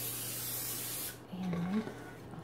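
Aerosol can of vegetable-oil cooking spray hissing steadily as it coats a baking dish, cutting off suddenly about a second in.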